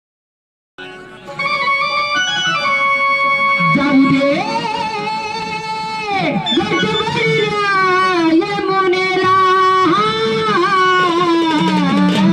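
Amplified live music for a Marathi gavlan song, starting about a second in: held keyboard notes at first, then a melody line that slides and bends between pitches.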